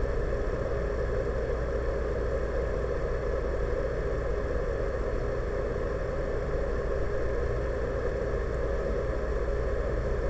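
A steady, even mechanical hum, like a fan or motor, that does not change and carries no distinct events.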